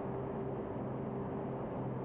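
Steady low hum with a faint steady tone from a running SBI fire-test rig: the gas burner's flame and the exhaust hood's extraction.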